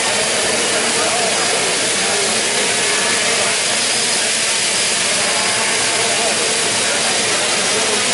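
3DR Solo quadcopter flying close by, its four propellers and electric motors making a steady hiss.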